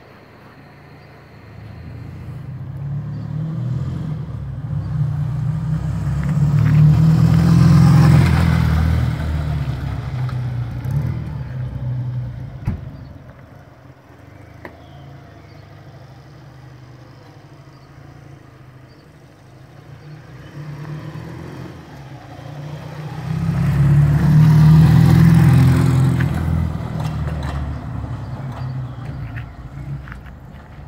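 1964 Triumph 3TA Twenty One 350cc parallel-twin motorcycle ridden past twice, its engine note growing as it approaches and fading as it goes away; the first pass is loudest about eight seconds in, the second near twenty-five seconds.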